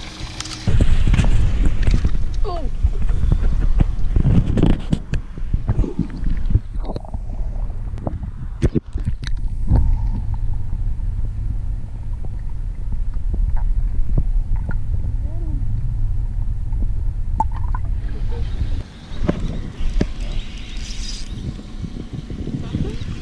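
Muffled sound of a camera held underwater: sloshing and knocks at first, then a steady low rumble with the higher sounds cut off, which breaks off about nineteen seconds in.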